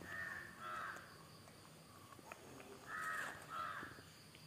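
A bird calling, four short calls in two pairs: one pair at the start and another about three seconds in.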